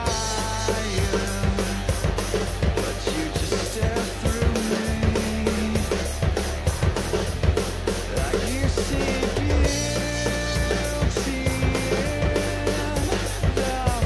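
Acoustic drum kit played to a music backing track: a steady run of evenly spaced cymbal strokes with kick and snare hits, over held pitched notes and a continuous bass line from the track.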